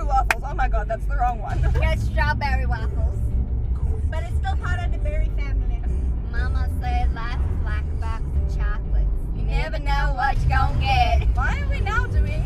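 Steady low road and engine rumble inside the cabin of a moving car, under women's voices talking.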